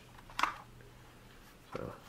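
A single brief click of the shotgun's fore-end being fitted by hand over the magazine tube, about half a second in. The word "So" is spoken near the end.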